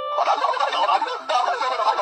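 A goat's rapid, warbling chatter of bleats that sounds like gibberish talk, heard through a screen's speaker and re-recorded.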